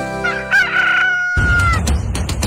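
A rooster crowing once, one long call that falls off at the end, laid over a held chord at the close of a radio jingle. About a second and a half in, music with a heavy beat starts.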